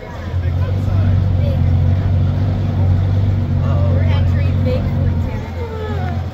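Engine of a giant 4x4 monster tour truck running as it drives, a steady low drone that swells about a second in. Faint voices over it.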